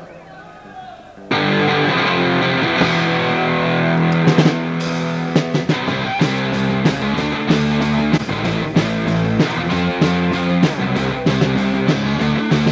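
Live punk rock band with electric guitars, bass and drums: after about a second of quieter stage sound, the whole band comes in together and plays on loudly with a steady drum beat.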